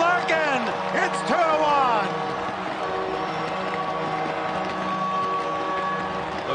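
Arena goal horn sounding a long, steady note over a cheering crowd, the signal of a home-team goal. An excited commentator's voice carries over the first two seconds.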